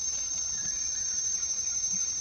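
Insects droning in forest undergrowth: one steady, high-pitched tone that holds unbroken.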